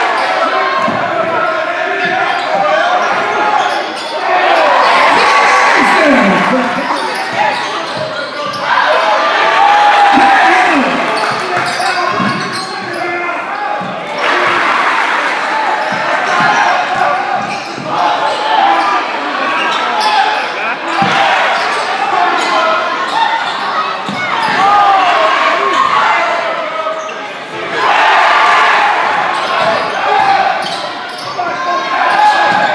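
Live game sound in a gymnasium: a basketball dribbling on the hardwood court, with voices of players and spectators echoing in the hall.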